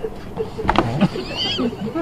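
A man laughing, broken and breathy, with a short high, wavering squeal of laughter just past the middle.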